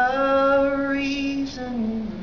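A man's voice singing long held notes without accompaniment, dropping to a lower note near the end.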